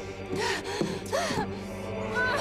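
A woman gasping twice with strain while gripping a heavy iron hand wheel, over background music with steady held notes.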